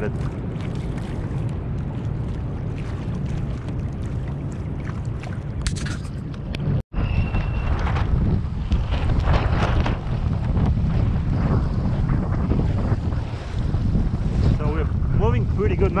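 Wind buffeting a GoPro microphone on a sailing kayak: a continuous low rumble, broken by a sudden brief dropout about seven seconds in. After the dropout the wind is gusty, 15 to 20 miles an hour by the sailor's estimate.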